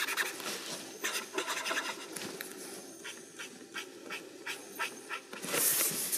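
Pencil sketching on paper: a quick cluster of scratchy strokes, then a run of separate short strokes about three a second, and a longer, louder stroke near the end.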